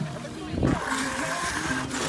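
Indistinct voices of people talking and calling, with no clear words, over a low rumble.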